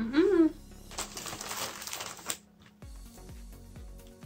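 A short rising vocal sound, then about a second and a half of plastic cookie packaging crinkling. Background music with a steady beat takes over for the rest.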